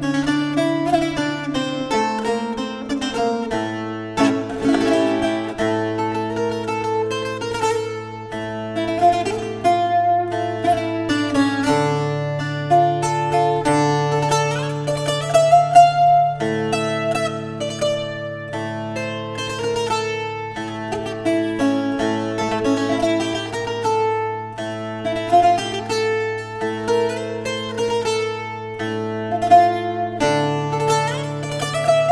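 Solo Azorean viola da terra, a steel-strung folk guitar with its strings in courses, fingerpicked: a quick melody of plucked notes over low bass notes that ring on and change every few seconds.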